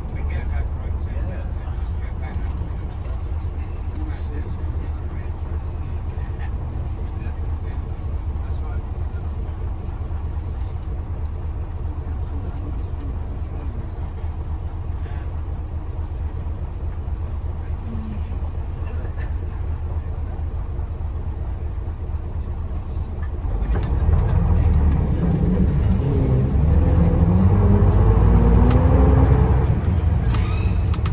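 Bristol LS coach's underfloor diesel engine heard from inside the saloon, running steadily with a low drone. About 24 seconds in it gets louder and its note climbs in pitch as the coach accelerates, with light rattles throughout.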